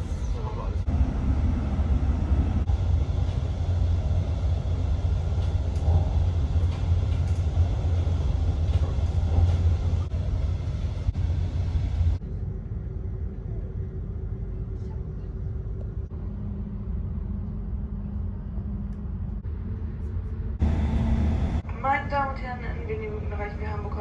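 Train running, heard from inside the carriage: a steady low rumble of wheels on track. About halfway through it drops abruptly to a quieter run with a faint steady hum, then comes back loud briefly before a recorded announcement begins near the end.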